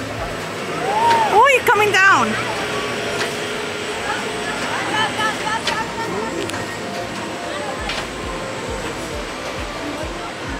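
A voice calling out, rising and falling in pitch, about a second in, over steady outdoor background noise, with fainter voices about halfway through.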